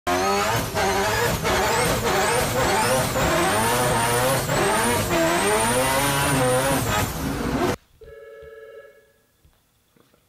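Turbocharged four-rotor rotary race car at full throttle, heard from inside the car. The engine pitch climbs and drops again and again as it slams through quick sequential gear shifts, with a turbo whistle rising and falling above it. It cuts off suddenly about three-quarters of the way through, followed by a brief faint tone.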